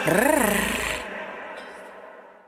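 A single drawn-out voice note that rises, falls and then holds steady, fading away as the song ends.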